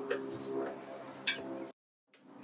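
Scattered light clicks and knocks over a steady low hum, with one sharp, louder click about a second and a half in; the sound cuts out abruptly just before the end.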